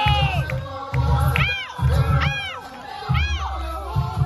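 Samba music with deep, regular bass-drum beats, while the dancers and crowd give three high, rising-and-falling whooping shouts in the middle.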